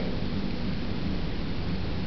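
Steady room noise between spoken phrases: an even hiss with a low rumble underneath, with no distinct sound standing out.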